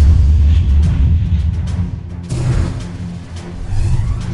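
Dramatic theme music with a heavy, booming bass and whooshing sweeps: a broadcast segment title stinger.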